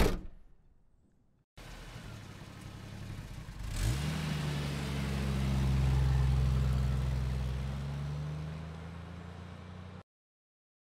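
A sharp slam like a car door shutting, then after a short pause a motor vehicle engine running; about four seconds in it revs up quickly and holds a steady high rev that swells and then eases off, cutting off abruptly at the end.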